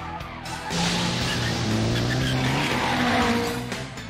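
Toyota AE86 engine sound effect revving hard, its pitch stepping upward around the middle, with tyres squealing through a corner, over background music.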